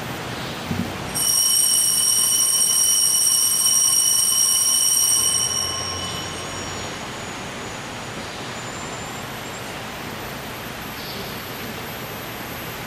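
Altar bells ringing, starting suddenly about a second in and holding a steady, high, bell-like ring for about four and a half seconds before stopping, with a faint ring trailing after. This marks the elevation at the consecration of the Mass.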